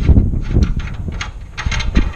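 A ratchet on an oxygen-sensor socket unscrewing the downstream oxygen sensor from the exhaust manifold, a few separate clicks over a loud low rumble.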